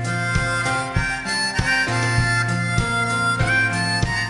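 Harmonica playing a melody over a live pop band, with drums keeping a steady beat, guitars and keyboard accompanying, during an instrumental break without singing.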